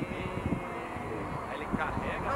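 Indistinct voices of people talking in the background, no clear words, over a steady low noise.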